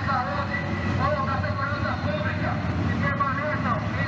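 An amplified voice calling out over a fire truck's loudspeaker, its words unclear, over a steady low rumble of vehicle engines.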